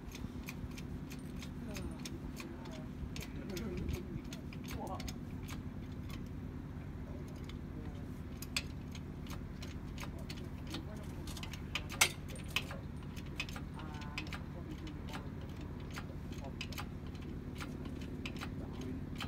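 Light metallic clinks and taps of tools and a hoist chain on a narrowboat engine in its engine bay, the sharpest about twelve seconds in, over a steady low mechanical drone.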